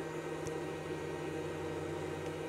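Steady low hum with an even hiss underneath, the constant sound of a fan or electrical appliance running in a small enclosed space.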